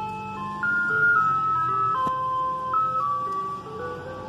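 Ice cream truck's electronic chime tune playing a simple melody of single held notes, growing fainter near the end as the truck moves off down the street.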